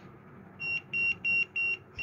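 Four short, high electronic beeps, about three a second, from a homemade Bluetooth speaker's module, starting about half a second in. The beeps are the module's indicator tone that it is on and ready to pair.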